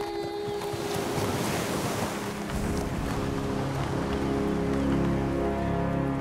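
Ocean surf on a beach: a wash of waves that peaks about a second and a half in and then eases, while low sustained notes of orchestral film score build beneath it from about halfway through.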